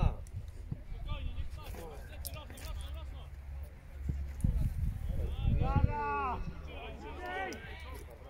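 Shouts of players on a football pitch, with a long call about six seconds in and a shorter one near the end, over a low rumble on the microphone.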